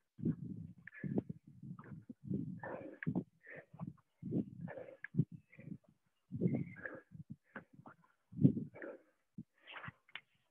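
Heavy breathing and short grunting exhales of people exercising hard, coming in irregular bursts about every half second to a second, with some bumps of movement on the mats.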